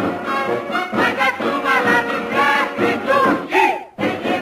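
A woman singing lead with a mixed chorus of men and women singing along, over instrumental accompaniment. The sound dips briefly near the end.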